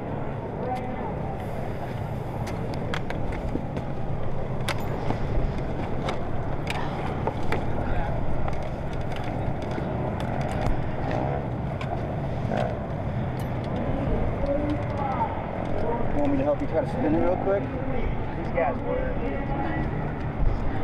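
Indistinct talking over a steady low rumble of motorcycle engines and wind, with scattered clicks; the voices come through more clearly in the second half.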